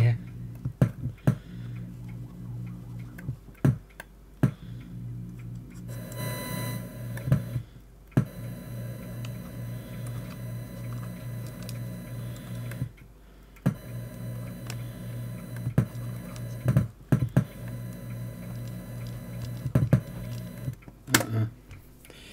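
Electrical hum from a cassette digitizer's input, switching on and off with sharp clicks as a probe touches the bare tape-head wires. A short burst of hiss and whistle comes about six seconds in. Only hum, whistle and hiss come through, no usable signal.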